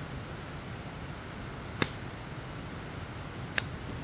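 Wood fire burning in a metal fire pit, logs crackling with three sharp pops: a faint one about half a second in, a loud one near two seconds and another near the end, over a steady hiss.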